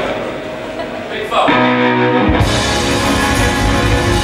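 Live electric blues band starting a song: after a quieter moment a guitar plays a rising note into held notes, and about two seconds in the drums and bass come in and the full band plays loudly.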